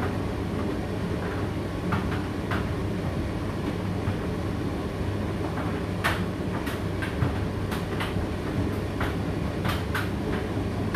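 Indesit IDC8T3 condenser tumble dryer running mid-cycle: a steady low hum and rumble from the turning drum and fan, with irregular light clicks and taps from the tumbling load that come more often in the second half.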